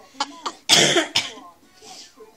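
A person's short bursts of laughter break into a loud cough about two-thirds of a second in, followed by a smaller second cough.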